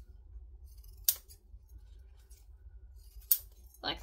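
Scissors snipping through the seam allowance of a sewn seam, two sharp cuts: one about a second in and another near the end.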